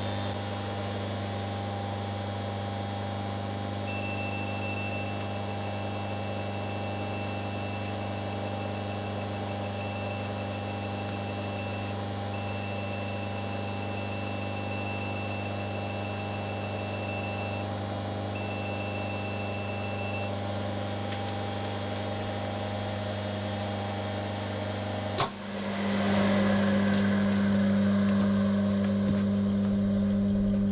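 Steady electrical hum of an old rotary phase converter's transformer and idler motor running on single-phase mains. Three stretches of a high, steady beep from a Fluke two-pole voltage tester come in while its probes are held on the three-phase outputs. About 25 seconds in there is a sharp click, after which the hum is louder.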